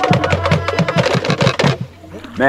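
Fast percussion of wooden clacks and drum beats, about seven a second, under a held sung note; it stops abruptly near the end.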